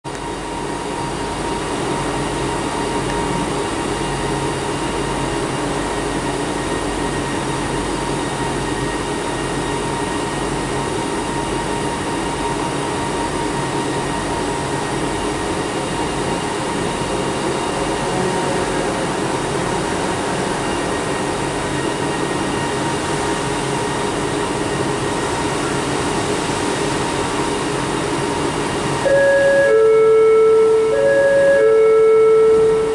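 Steady hum and hiss inside a stationary ART Mark III metro car with its doors open, carrying a faint steady whine from the car's ventilation and onboard equipment. About a second before the end, a louder chime of clear tones begins, the train's door-closing warning.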